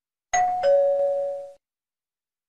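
Bell sound effect from a subscribe-button animation: a two-note ding-dong chime, a higher note and then a lower one, ringing for about a second before it fades out.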